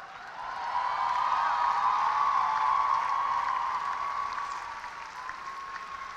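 Large audience applauding and cheering. The sound swells over the first second, is loudest for the next couple of seconds, then fades over the last part.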